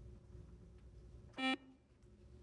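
Quiz-show buzz-in buzzer sounding once, a short steady electronic beep about one and a half seconds in, over faint studio room tone. It signals that a contestant has buzzed in to answer.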